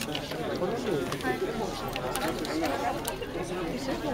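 Several people chatting at once, a murmur of overlapping voices with no single clear speaker, with a few light clicks.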